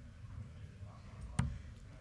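A steel-tip dart striking a Winmau Blade 6 bristle dartboard once, a single sharp thud about a second and a half in, over a low steady room hum.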